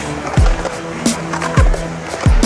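Music with a deep kick drum twice, about a second apart, a sharp snare hit between them, and held tones over the beat. Underneath, a skateboard's wheels roll on concrete.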